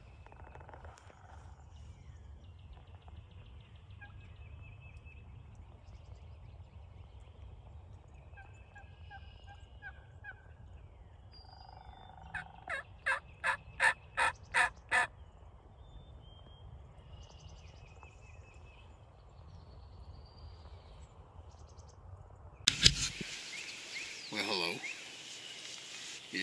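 Wild turkey calling: a run of about eight loud, evenly spaced calls, roughly three a second, midway through, over faint songbird chirps and a low steady outdoor rumble. Near the end comes a sharp knock, then rustling.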